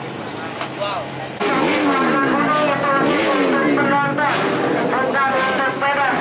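Motocross dirt bike engines revving, the pitch rising and falling over and over, with the sound turning much louder about a second and a half in.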